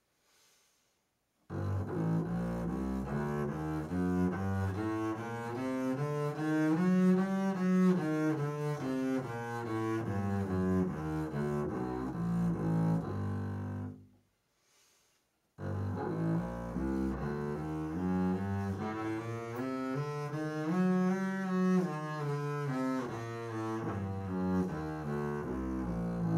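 Double bass played with the bow (arco), running a G minor scale note by note up and back down. It is played twice, with a pause of about a second and a half between the runs.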